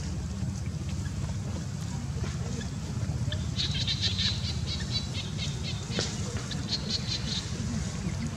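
Bird chirping in rapid high twittering runs from about three and a half seconds in until near the end, over a steady low rumble.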